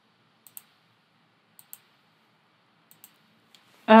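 Light computer mouse clicks: three clicks about a second apart, each heard as a quick press-and-release pair, then a single click near the end.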